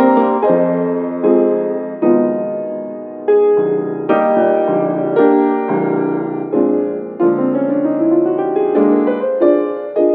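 Solo piano playing a slow hymn arrangement: chords struck about once a second and left to ring, with a rising run of notes in the second half.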